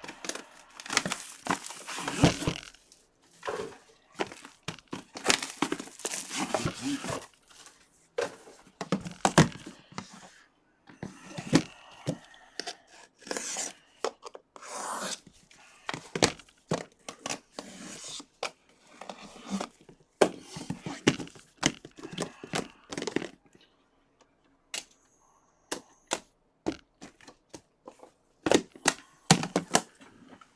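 Packaging torn and crinkled as a sealed aluminium trading-card briefcase box is unwrapped, in irregular stretches of rustling with scattered sharp clicks and knocks.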